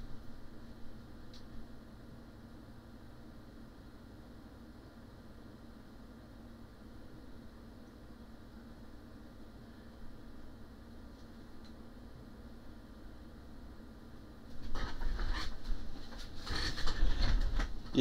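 Quiet room tone with a steady low hum. About three and a half seconds before the end, a louder stretch of noise with a few sharp clicks.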